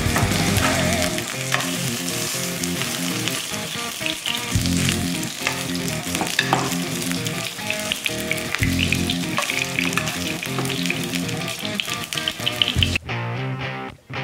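Seitan steak sizzling and spitting in hot oil in a non-stick frying pan, just after being flambéed, with guitar music underneath. The sizzle cuts off about a second before the end, leaving only the music.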